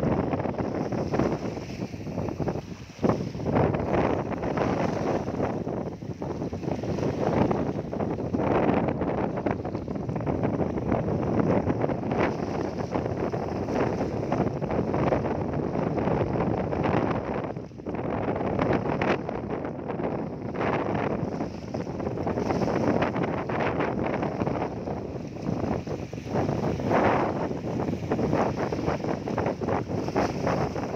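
Small sea waves washing and splashing over a shallow, seaweed-covered rocky shore in a steady, rolling wash, with wind buffeting the microphone.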